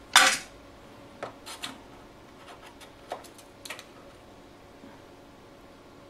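A small screwdriver scraping in the fuse drawer of an IEC mains inlet, clearing out the remains of a blown fuse. One loud scrape near the start, then a few light metallic clicks and scrapes.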